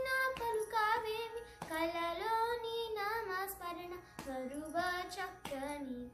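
A girl singing solo and unaccompanied, in short phrases with brief breaks between them. Her held notes waver and bend in ornamented turns.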